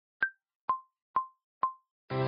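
Four short, pitched pop sound effects about half a second apart on an edited soundtrack, the first a little higher in pitch than the other three, with dead silence between them.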